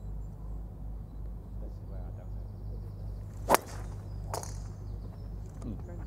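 A golf club striking a ball in a full range swing, a single sharp crack about three and a half seconds in. A fainter second crack follows just under a second later.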